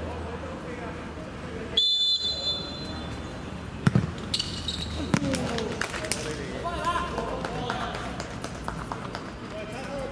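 A referee's whistle blows once, a steady high note lasting about a second, about two seconds in; then the ball is struck with a sharp thud, and again about a second later, among players' shouts.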